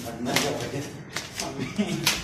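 A person's voice in short snatches, over rustling and clattering handling noise.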